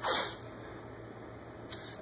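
White athletic tape being pulled off the roll with a short ripping sound at the start, then a fainter, briefer rip near the end.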